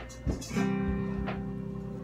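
Acoustic guitar strummed: a short stroke right at the start, then a full strum about half a second in that rings out and slowly fades, the simplified F chord being demonstrated.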